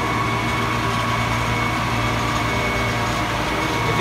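Case IH 9240 Axial-Flow combine driving slowly past, its diesel engine running with a steady low drone.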